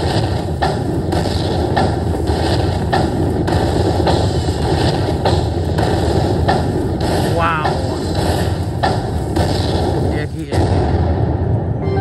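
Aristocrat Buffalo Link slot machine playing its bonus-win rollup as the win meter counts up: a rhythmic beat of heavy thumps, roughly three a second, over a loud, dense backing, with a few short rising chirps in the middle. It breaks off shortly before the end.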